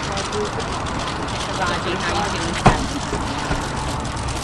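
Press-scrum commotion: overlapping, indistinct voices over jostling and handling noise, with one sharp knock about two-thirds of the way through.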